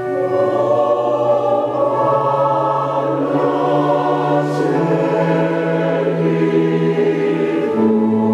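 Mixed choir of women's and men's voices singing a slow piece in long held chords that change gradually, a new phrase beginning right at the start.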